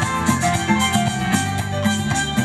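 Live Latin band playing an upbeat number: a stepping bass line under timbales and drum kit keeping a steady beat, with keyboard and violin lines above.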